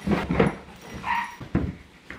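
A person imitating a dog: dog-like barks and yips, with a short whine about a second in, over the rustle of shredded paper being dug out of a plastic bin and scattered.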